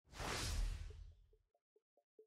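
An editing whoosh sound effect with a deep low rumble, sweeping in at the start and dying away over about a second, followed by faint pitched ticks about five a second.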